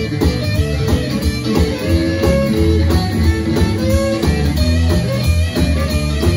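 Live blues-rock band playing an instrumental break: electric guitar, electric bass and drum kit with a steady beat, with amplified harmonica played into a handheld mic.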